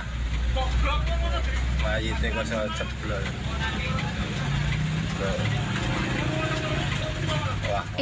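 A motor vehicle's engine rumbles steadily with voices talking over it; the low rumble eases off a little past the middle.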